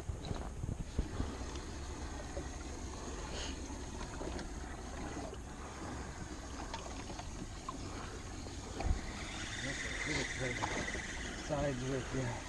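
Small waves lapping against a fishing boat's hull, with a steady low wind rumble on the microphone and faint, indistinct voices.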